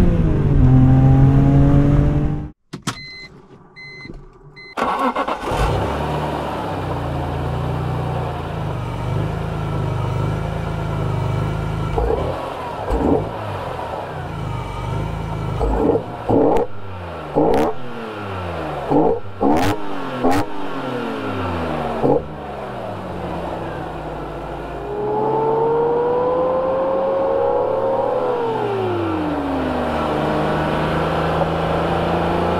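BMW E46 M3's S54 straight-six, heard at the intake: it accelerates hard, cuts to a brief near-silent gap with a few electronic beeps, then idles. In the middle it is blipped in a string of sharp free revs, each rising and dropping quickly. After more idling it pulls up through the revs and falls back near the end.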